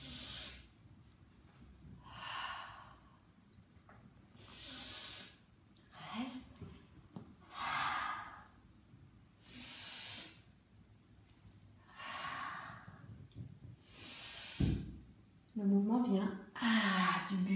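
A woman's deep, audible exercise breathing: seven slow breaths in and out, one about every two and a half seconds, paced with a stretch. A short low thump comes near the end.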